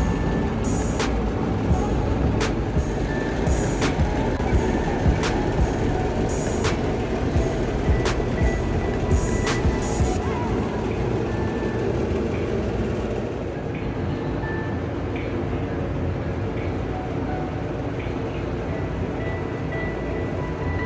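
Background music with a steady beat and heavy low end; the beat's sharp hits drop out about halfway through.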